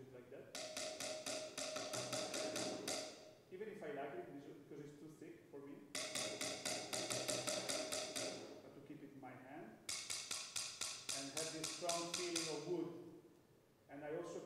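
Soft mallet playing quick repeated strokes, about five a second, on a thick stainless-steel pan bottom held against a snare drum head, so the metal and the drum ring together. The strokes come in three runs of two to three seconds each.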